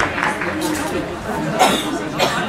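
Voices of players and people at the pitchside talking and calling out, with one louder shout about a second and a half in.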